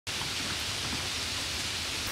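Heavy rain falling steadily, an even hiss of water.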